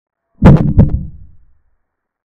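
Chess-board sound effect for a pawn capture: two low knocks about a third of a second apart, fading out quickly.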